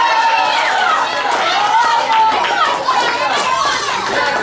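A class of young schoolchildren talking and calling out over one another, many voices at once and loud.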